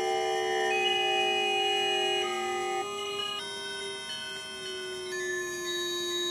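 Electroacoustic music from a sensor-driven MaxMSP instrument: several sustained electronic tones held together, shifting to new pitches a few times, with one low tone gliding slowly downward.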